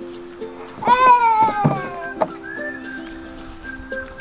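Background music with soft plucked notes; about a second in, a child's high voice calls out once, a long cry that falls in pitch as he goes down the slide.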